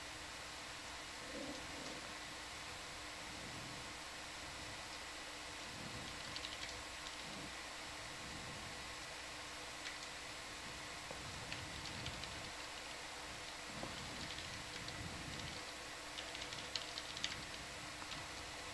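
Faint steady hiss with a low hum underneath, dotted with scattered light clicks that come more often near the end.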